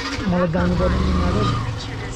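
Motorcycle engine starting up and running, with a swell in its sound between about half a second and a second and a half in.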